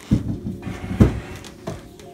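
Two dull thumps about a second apart, with a lighter knock near the end: kitchen handling at the countertop.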